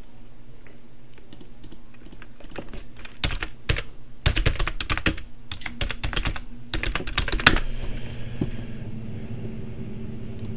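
Typing on a computer keyboard: a quick run of keystrokes from about two seconds in to about eight seconds, with one sharper, louder keystroke near the end.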